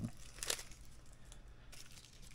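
Faint rustle of small plastic or paper packaging being handled and unwrapped, with one sharper crinkle about half a second in and a few light ticks near the end.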